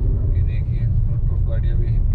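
Steady low rumble of road and engine noise inside a moving car's cabin, with a voice speaking briefly about half a second in and again near the end.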